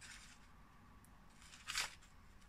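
Quiet handling of a paper kite: a faint rustle of paper and thread, with one short, louder rustle near the end as the thread is knotted through the kite's hole.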